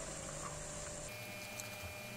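Boiled green lentils tipped from a strainer into a pan of sautéed cabbage: a faint, soft pour over a steady low hiss.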